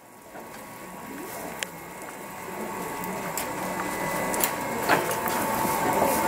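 Automatic rotating mochi-baking machine running, its cast-iron moulds moving around the loop with a steady mechanical sound and a few sharp clicks. The sound swells gradually after a brief dip at the start.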